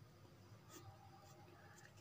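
Faint scratching of a pen on paper: a few short strokes as letters are underlined, against near silence.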